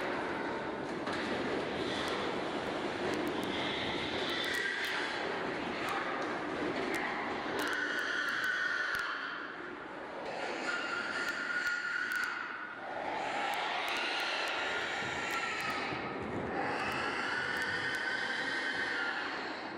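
Steady machinery noise of a CO2 stunning system. Over it, pigs give a series of long monotone screams, one to two seconds each, several in turn. These are most likely a residual brainstem reaction and spasms of the larynx in unconscious pigs.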